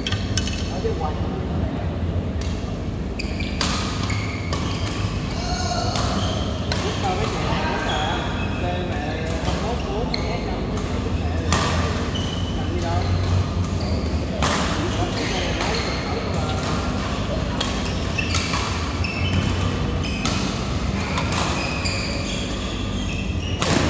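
Badminton rackets striking a shuttlecock during doubles rallies: sharp hits at irregular intervals throughout, with players' voices and a steady low hum underneath.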